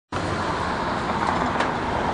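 Steady street traffic noise, with a faint click about one and a half seconds in.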